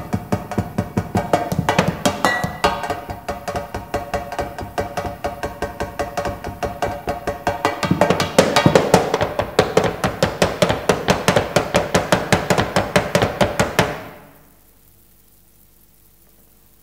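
Improvised kitchen percussion: mallets striking steel canisters, tin cans, small cymbals and small drums in a quick, steady run of about five strokes a second, with metallic ringing tones. It grows louder about halfway through, then stops abruptly shortly before the end.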